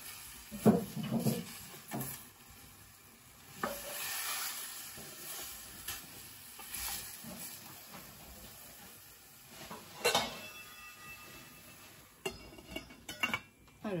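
Wooden spoon stirring vegetables in a dark metal pot, knocking and scraping against the pot, over a light sizzle as the vegetables sauté in olive oil without water. A ringing metal clink about ten seconds in, and a clatter near the end as the lid goes on the pot.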